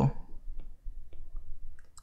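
Faint, scattered clicks and taps of a stylus writing on a pen tablet.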